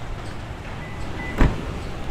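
A single solid thump about one and a half seconds in: the trunk lid of a 2011 Lexus IS 250 sedan being shut, over a low rumble of handling noise.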